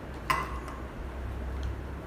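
A single light clink of kitchenware about a third of a second in, followed by a couple of faint ticks, over a low steady hum.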